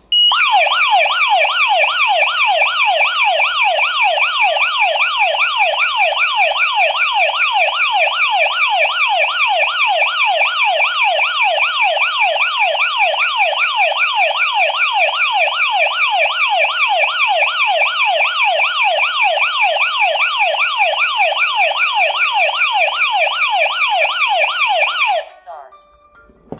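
HOMSECUR H700 burglar alarm siren wailing in rapid, continuous up-and-down sweeps: the alarm has been set off by a door contact sensor opening while the system is armed. It cuts off abruptly near the end when the system is disarmed with the remote.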